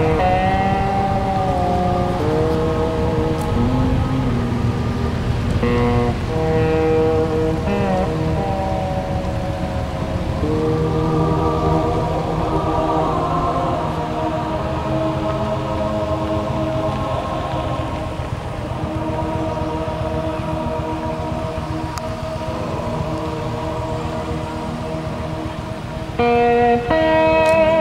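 Slow background music of long held notes that change every couple of seconds, with a steady rushing noise beneath.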